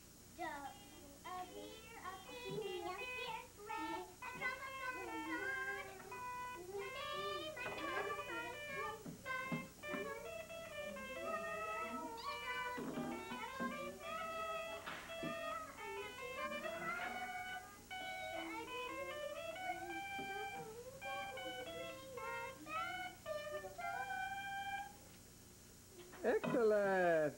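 A young girl singing a slow song unaccompanied, holding long notes in phrases with short breaks between them.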